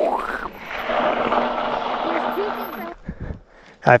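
A man laughing over a steady rushing hiss that lasts about three seconds and then drops away.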